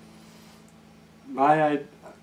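A man's voice saying a single short word about a second and a half in, over the faint tail of a guitar note still ringing low.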